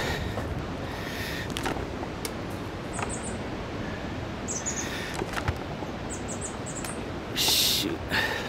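Birds chirping in a few short clusters of high notes over a steady rushing background, with a brief loud hiss near the end.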